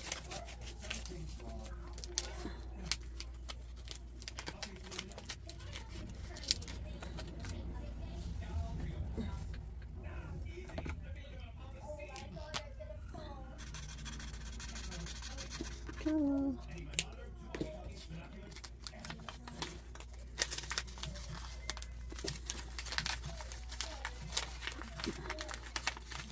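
Paper cards and plastic binder sleeves being handled, with scattered soft clicks and rustles, and a felt-tip marker scratching across a laminated card for a couple of seconds about midway, over a low steady hum.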